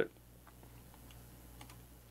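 A few faint, scattered computer keyboard clicks over a low steady hum.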